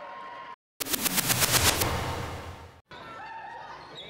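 Gym crowd cheering and clapping, a dense crackle of hands that is loudest about a second in and then fades. The sound drops out completely for a moment twice, at the edits between clips.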